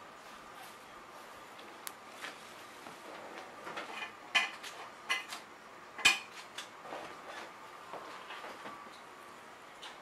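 Light clinks and knocks of a clothes hanger being handled on a garment steamer's metal pole and hanger bar: a scattered run of taps, with two sharper clacks about four and six seconds in.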